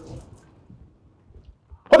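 Near-quiet room tone with faint low background noise and a few soft small sounds, then a woman's loud shouted word near the end.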